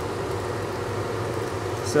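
Laminar flow hood blower running steadily: an even airy hiss with a low hum underneath.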